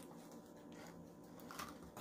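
Near silence with two faint clicks, about a second apart, from small plastic sauce cups being handled.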